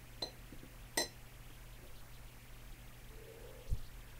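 Two sharp metallic clinks about three-quarters of a second apart, from a small aluminium medwakh smoking pipe being handled and set down, followed by a soft low thump near the end.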